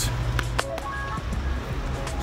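Background music with a steady low bass and a few short, clear melodic notes in the middle; a couple of sharp clicks about half a second in.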